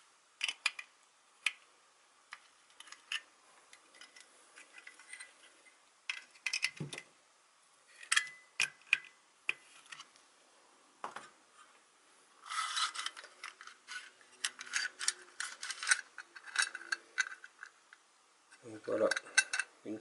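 Phillips screwdriver unscrewing the screws of a mini wood lathe's painted steel cover, with scattered small metallic clicks and scrapes. A denser stretch of rattling and scraping comes a little past halfway, as the metal cover and its screws are handled.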